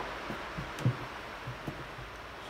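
A few soft, low knocks from hands handling the plastic tackle pod, the loudest a little under a second in, over faint room hiss.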